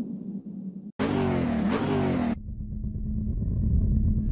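Car engine revving sound effect: a sudden loud rev about a second in that rises and falls for just over a second, settling into a lower steady rumble.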